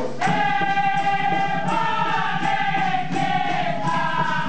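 A dikir barat group of men sings a long, held chorus line together over a steady percussion beat.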